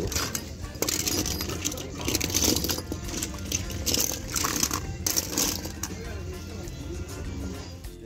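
Music, with small die-cast and plastic toy cars clicking and clattering in a heap as they are sifted by hand.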